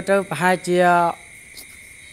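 A man speaking Khmer for about the first second, then a short pause. Underneath, a faint steady high-pitched insect drone runs on throughout.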